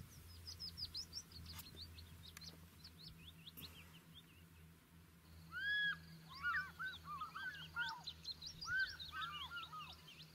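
Several wild birds chirping and calling, many quick high chirps throughout. From about halfway through, louder, arched whistled calls lower in pitch join in. A faint steady low hum runs underneath.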